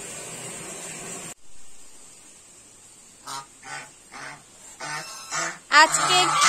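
Domestic geese honking: a run of short honks that begins about three seconds in and comes faster and louder toward the end. Before that, a steady hiss cuts off abruptly.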